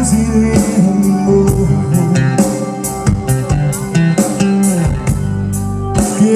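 Live rock band playing a passage without vocals: electric guitar line over bass guitar and a drum kit keeping a steady beat.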